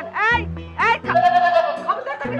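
Goat bleating twice in quick succession over background music, which goes on into a held note.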